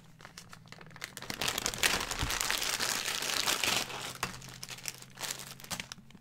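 Small plastic zip-lock bags of wooden board-game tokens crinkling as they are handled, a dense rustle that builds about a second in and thins out near the end.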